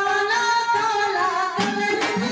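A woman sings a Haryanvi devotional song into a microphone over instrumental accompaniment, her voice holding and bending long notes, with a drum stroke near the end.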